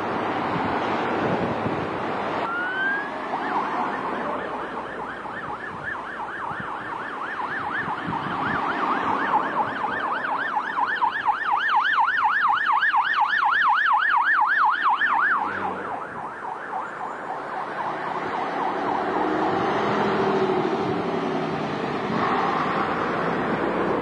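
Emergency vehicle siren: a rising glide a few seconds in, then a fast yelp sweeping up and down about three or four times a second. It is loudest around the middle and cuts off suddenly about two-thirds of the way through, over passing road traffic.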